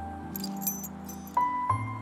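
A bunch of keys jingling briefly as they are dangled in a hand, during the first second, over background music of long held notes.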